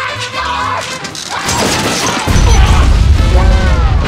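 Loud music mixed with crashing noise; a heavy bass comes in a little over halfway through.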